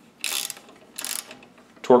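Ratcheting torque wrench clicking in two short bursts as it turns the stainless pivot bolt of the rocker-arm linkage, run in before it is torqued to 11 newton metres.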